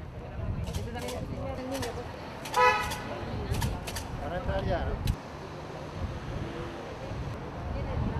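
A brief car horn toot about two and a half seconds in, the loudest sound, over steady crowd chatter and street traffic, with a few scattered light clicks.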